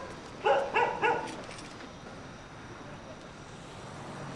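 A dog barking three short times in quick succession about a second in, then faint steady background.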